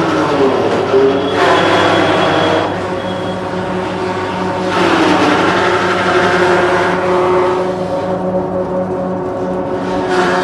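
Banana fibre extraction machines running with a steady motor hum. Twice, strips of banana pseudostem are fed into a spinning drum, giving a loud rasping as the drum's pitch dips under the load and then levels off: once about a second in for about a second and a half, and again about five seconds in for about three seconds.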